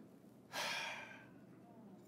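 A man's single loud, breathy sigh into a close microphone, starting about half a second in and fading away within a second.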